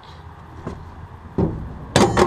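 Knocks in the bed of a vehicle while a dirt bike is handled there: a light knock under a second in, a louder one about a second and a half in, and a sharp bang, the loudest, at the end.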